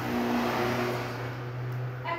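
Liquid poured in a stream from a plastic cup into a plastic tub, a steady splashing pour, with a steady low hum underneath.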